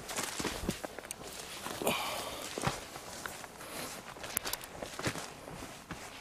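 Footsteps walking over the forest floor: an irregular run of crunches and rustles.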